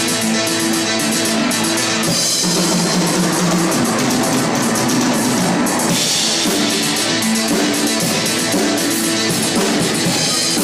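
Live rock band playing an instrumental passage: drum kit with cymbals and electric guitar over sustained bass and keyboard notes, steady and loud.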